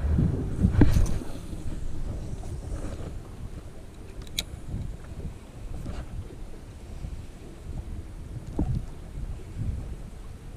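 Wind buffeting the camera microphone: an uneven low rumble in gusts, strongest in the first second. A single faint click comes about four and a half seconds in.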